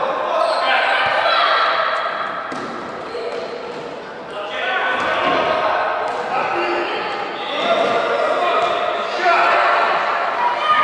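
Children's voices shouting across a large, echoing gym, with a few thuds of the ball on the wooden floor.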